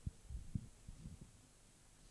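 A few faint, low thumps over quiet room tone in the first second or so.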